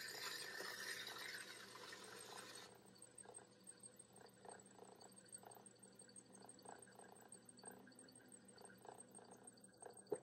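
Faint sound of a potter's wheel turning with hands and a tool on wet clay. A soft hiss of hands sliding over the wet clay for the first few seconds, then a low steady hum with faint soft rubbing about twice a second.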